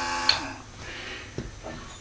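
Small 12-volt DC motor of a motorized turntable running at full speed with a steady whine. A click comes about a third of a second in, and the motor whine dies away, leaving a quiet stretch with one faint knock.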